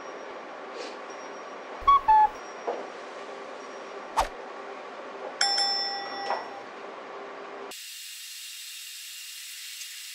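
A bell-like ding with several ringing overtones about five and a half seconds in, after a few short clinks and taps over quiet room noise. From about eight seconds there is a steady hiss.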